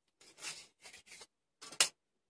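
A metal scraper rasping set casting plaster off a mould in three short strokes, then a sharp knock near the end.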